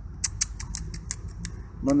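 A person making a quick run of about nine short kissing squeaks, some six a second, to call a frightened dog over.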